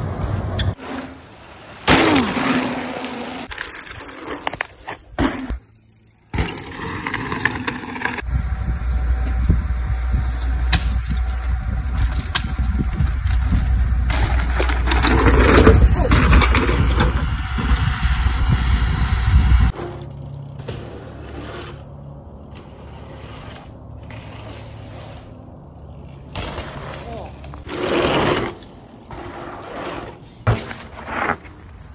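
Bicycle riding sounds from several short clips cut together: tyres rolling, scraping and landing on concrete and dirt. A long stretch in the middle, while a mountain bike rides over a rocky trail, carries a loud low rumble that stops abruptly at a cut.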